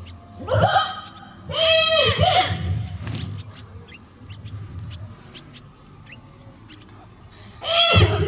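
Drill commands shouted in long, drawn-out calls by a parade-ground commander: two calls in the first two and a half seconds, then a gap with faint short chirps over a low hum, and another shouted command starting near the end.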